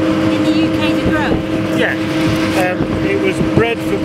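Wind buffeting the microphone in an exposed field: a continuous rough rumble with a steady droning hum under it, broken by bits of quiet talk.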